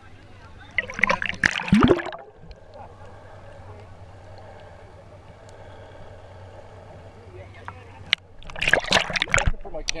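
Water sloshing and splashing against a camera held at the water's surface, in two bursts about a second in and near the end. Between them the sound turns muffled and dull while the camera is under water.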